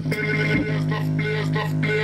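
Music with a steady deep bass note and short repeating higher notes, played loud through a small portable speaker with its drivers and bass radiator exposed.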